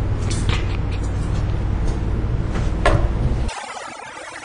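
A steady low rumble with a few sharp clicks over it, cutting off suddenly about three and a half seconds in.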